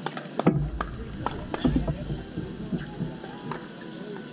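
Irregular sharp pops of pickleball paddles striking a plastic ball, the loudest about half a second in, with faint voices and a low rumble in the first two seconds.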